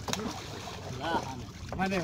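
Low background voices of a group talking, with faint splashing and short clicks from hands working through a wet plastic net full of small live fish; a man starts speaking near the end.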